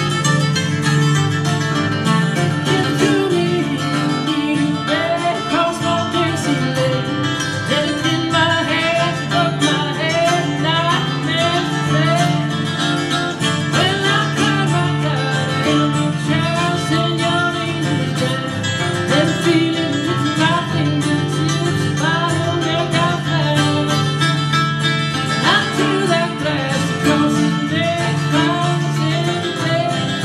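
Two acoustic guitars playing a country/bluegrass-style song live, with quick picked melody lines over strummed rhythm.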